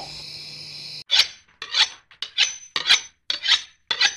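A run of rasping back-and-forth scrapes, about six strokes a little under two a second, starting about a second in after a faint steady hum.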